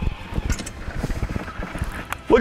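Wind buffeting the microphone on an open boat at sea, an irregular low rumble of thumps over a faint wash of water.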